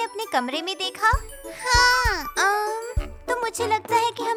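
Children's song: a child's voice sings in sliding pitches over music with tinkling, bell-like sounds and a light beat.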